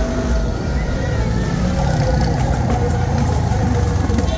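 Motorcycle and car engines of a slow-moving motorcade running and passing close, a steady loud rumble, with voices mixed in.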